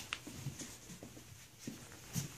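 Faint scratching and a few light taps of dogs' paws and claws moving about, mostly puppies scrabbling on blanket bedding.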